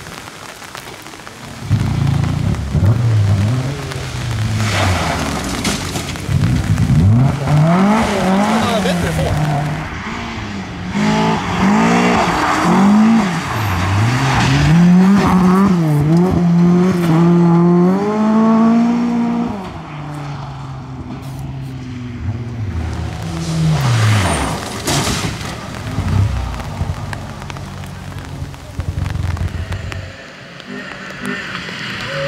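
Rally car engines revving hard on a gravel special stage, the engine note climbing and dropping again and again through gear changes and lifts. The sound is loudest in the first two-thirds and quieter near the end, with another rise and fall of the engine there.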